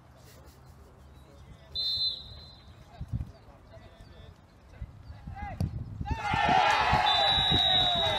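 A referee's whistle gives one short blast about two seconds in, signalling the penalty kick to be taken. About six seconds in, spectators burst into cheering and shouting at a scored penalty, and the referee's whistle sounds again in a longer blast, confirming the goal.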